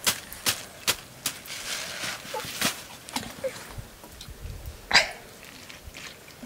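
Thin plastic bag crinkling in sharp snaps, about two or three a second, as flour is shaken and flicked out of it into a steel plate. After that the handling turns quieter, and there is one louder, short sound about five seconds in.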